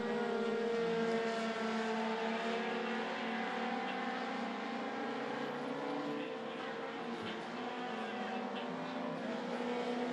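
Four-cylinder dirt-track race cars running laps as a pack, their engines making a steady drone that rises and falls slowly in pitch as they go around.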